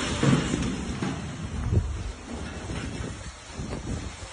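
Rumbling wind and handling noise on a phone microphone as the phone is moved about, with a few dull thumps in the first two seconds.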